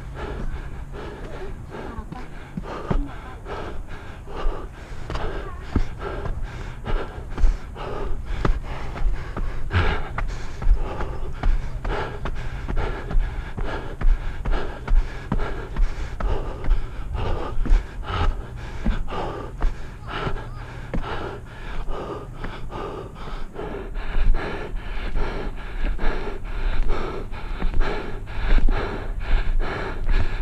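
A person breathing hard and panting close to the microphone while climbing steep stairs, quick and rhythmic at about two breaths a second.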